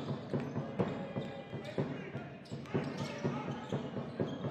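A basketball being dribbled on a wooden court, bouncing repeatedly at a quick, fairly even pace, with arena noise behind.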